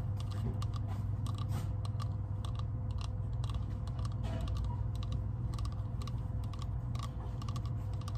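Fingernails tapping and scratching on a hollow painted pumpkin decoration close to the microphone, quick irregular clicks several times a second. A steady low hum runs underneath.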